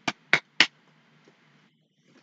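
Three quick, sharp clicks about a third of a second apart, made by a person calling a puppy over.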